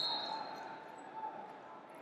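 Wrestling tournament hall ambience: a steady murmur of distant voices echoing in a large hall, with a short high squeak right at the start.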